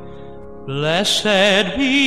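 Male Southern gospel vocal group: a held chord fades into a brief lull, then the voices come back in about two-thirds of a second in, sliding up into a new phrase and singing with wide vibrato.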